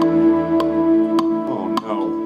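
Orchestral score holding a sustained chord, with a sharp tick a little under twice a second. A voice begins near the end.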